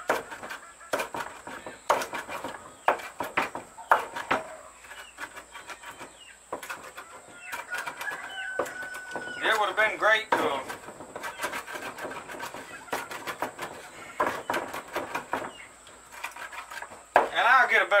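Chopping herbs on a wooden cutting board with a handmade ulu knife: a run of irregular sharp knocks as the blade strikes the board. About ten seconds in, a rooster crows once.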